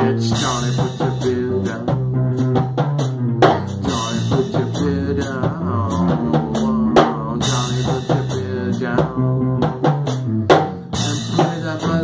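Rock band playing an instrumental break: drum kit keeping a steady beat with a cymbal crash every few seconds, under bass and guitar.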